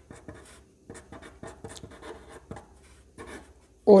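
Pen writing on paper: a run of short, irregular scratching strokes as a formula is written out by hand.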